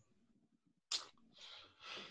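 A person's short, sharp breath-like burst about a second in, followed by faint breathing.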